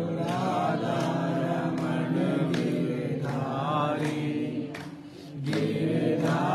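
A group of voices chanting a devotional chant together, with a short pause near the end before the chant picks up again.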